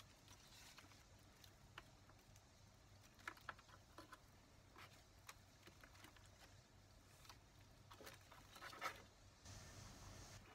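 Faint scattered rustles and crackles of fingers working through potting soil and pulling a strawberry plant's roots loose, with a few slightly louder ones near the end.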